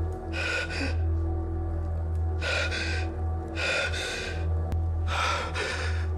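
A man's heavy, gasping breaths, four of them in a few seconds, over a steady low musical drone.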